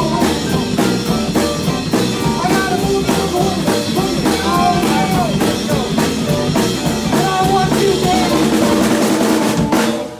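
Live blues-boogie band playing an instrumental passage: electric guitar with bent notes over a busy drum kit and bass, stopping on a last accented hit near the end.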